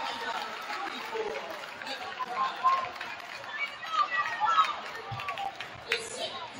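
Crowd chatter in a school gymnasium: many people talking at once, with a few louder voices standing out in the middle of the stretch.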